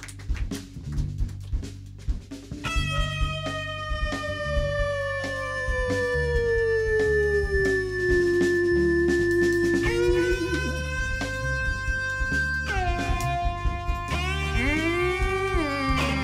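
Live funk-jazz band playing an instrumental vamp: a bass and drum groove, with long held lead notes coming in about three seconds in, the first one sliding slowly down in pitch, then more bent notes toward the end.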